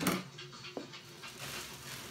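German Shepherd chewing a hard plastic toy: a sharp click of teeth on plastic as it begins, another fainter click a little under a second later, and quiet gnawing between.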